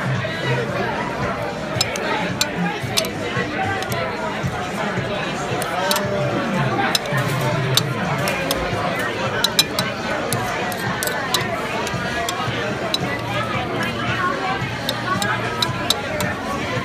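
Metal spoon and fork clicking and scraping against a ceramic plate as chopped raw beef is mixed for steak tartare, many light clinks scattered throughout. Behind it run steady restaurant chatter and background music.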